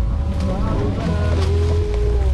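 Jeep engine and drivetrain giving a steady low rumble as the Jeep crawls slowly over a rough dirt trail, heard from inside the cab.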